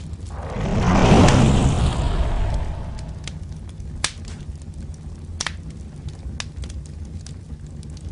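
Fire sound effect for an animated fireball. A rush of flame swells about half a second in and dies away over the next two seconds, over a steady low rumble with a few sharp crackles later on.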